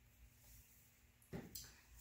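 Near silence: room tone with a faint steady hum, broken about a second and a half in by a short soft knock as an emptied plastic paint cup is set down on the plastic-sheeted table.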